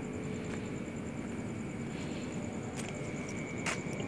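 Steady low outdoor background rumble of an open road, with a faint high whine and a couple of faint clicks near the end.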